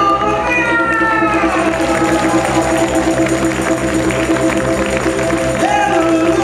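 Live Cajun-country band music: steady held accordion chords with banjo, and a few notes sliding down in pitch in the first second and a half.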